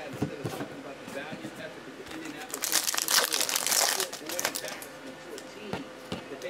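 Wrapper of a 2015 Panini Valor football card pack crinkling and tearing open. The crackle is loudest for about a second and a half in the middle, with quieter rustling and handling of the wrapper before and after.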